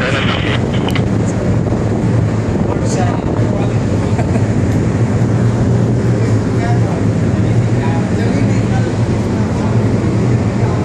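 A ship's engines and machinery running: a steady low drone with a constant rushing noise over it.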